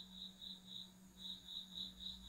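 Faint room background: a high-pitched tone pulsing about four times a second, with a short pause about a second in, over a low steady hum.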